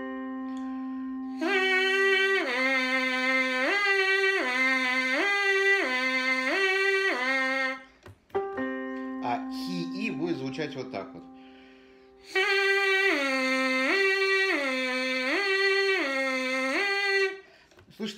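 A trumpet mouthpiece buzzed in the 'хи' tongue-syllable exercise, slurring smoothly up and down a fifth about five times, played twice. Each take starts after a keyboard sounds the same fifth as a reference, which fades away.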